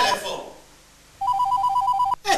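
Electronic telephone ringer warbling rapidly between two notes, in bursts about a second long. One ring ends just after the start, and the next begins a little over a second in.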